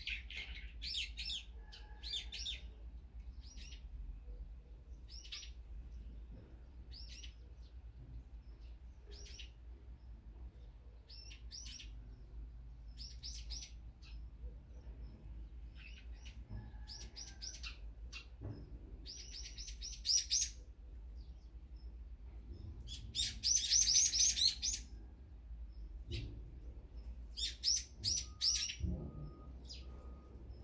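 Small songbirds chirping in quick, short bursts throughout, with the loudest run of chirps about three-quarters of the way in, over a low steady background hum.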